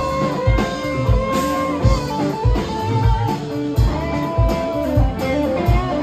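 Live band playing an instrumental passage: electric guitar holding long lead notes over bass and a steady drum beat of about two kicks a second.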